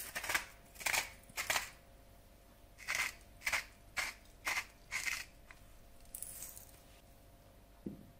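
Hand-twisted spice mill grinding seasoning: two runs of short crunching twists, about nine in all, the first in the opening second and a half and the second from about three to five seconds in. A soft bump near the end.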